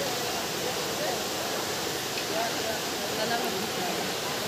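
Steady rush of a small waterfall and rapids pouring over rocks into a river, with faint distant voices.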